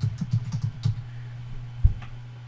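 Typing on a computer keyboard: a quick run of keystrokes in the first second, then a single loud, low thump near the end. A steady low hum runs underneath.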